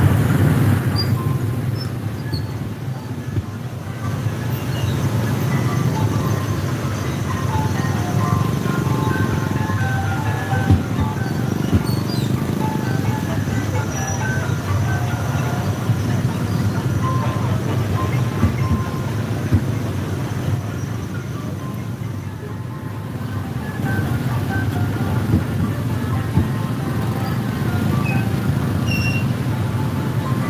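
Steady low rumble of many motorbike engines crawling through a jam in a narrow alley, mixed with music and scattered voices.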